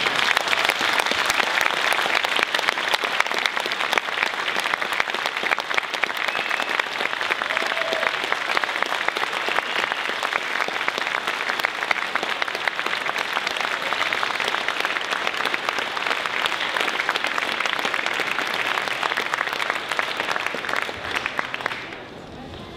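A large indoor audience applauding steadily, the clapping slowly thinning and dying away near the end.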